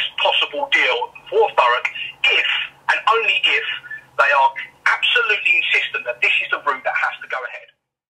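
A man speaking, the speech cutting off suddenly near the end.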